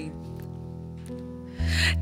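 Soft instrumental music from a live band: sustained chords, with a stronger bass note coming in about one and a half seconds in.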